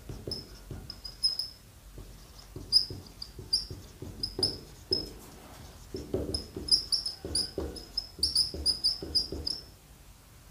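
Marker pen squeaking and scratching on a whiteboard as words are written: a quick run of short, high squeaks with softer strokes between them, thicker in the second half.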